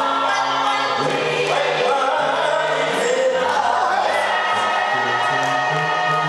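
Gospel choir singing in harmony over low sustained accompanying notes that step from pitch to pitch.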